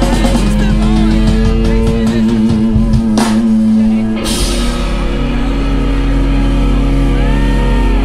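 Live rock from a two-piece band, distorted electric guitar and drum kit, playing loud. There is a sharp drum and cymbal hit about three seconds in, and after it the guitar notes ring on.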